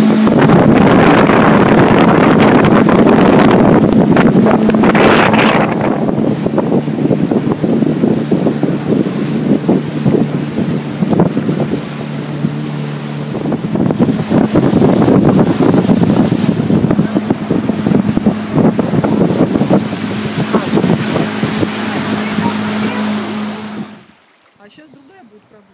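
Motorboat engine running steadily with a constant low hum while the boat is under way, with water rushing and splashing along the hull and wind buffeting the microphone.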